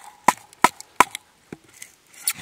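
A large knife chopping into a stick of wood: four sharp, woody knocks about a third of a second apart, then two fainter ones.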